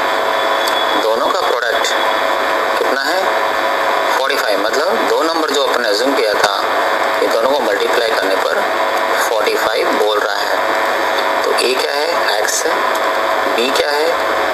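A person's voice speaking over a steady hiss. The voice sounds thin, with no bass.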